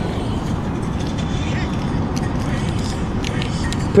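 Steady low rumble of surf and wind on the shore, with a few faint ticks and scrapes.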